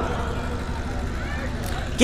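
A short pause in a shouted sermon: a low, steady background rumble of the gathering and its sound system, with faint murmur. The preacher's loud voice cuts off right at the start.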